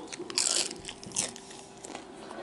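A bite into a crunchy taco shell: a loud crunch about a third of a second in, a second shorter crunch just after a second, then quieter chewing.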